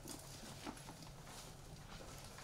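Faint rustling and a few soft irregular taps as thin Bible pages are turned by hand, over a steady low room hum.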